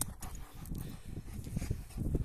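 Rottweiler breathing and panting close to the microphone, in short irregular puffs.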